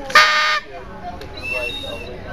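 A short toot from a hand-held whistle: one loud, steady note of about half a second just after the start, then a fainter high whistle tone near the end.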